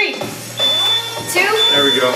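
Electronic interval timer beeping, a short high-pitched tone about once a second, counting down to the start of the next work interval, over background music.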